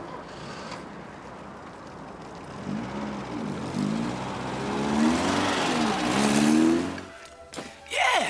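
Car engine revving up and down over and over, growing louder as it comes closer, then cut off suddenly about seven seconds in.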